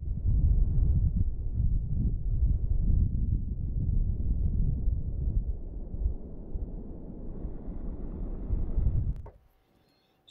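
Wind buffeting the microphone outdoors, a low, gusting rumble that starts suddenly and cuts off abruptly about nine seconds in.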